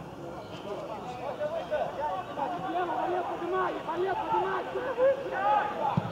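Several men's voices shouting and calling over one another across an open-air football pitch, in short overlapping calls.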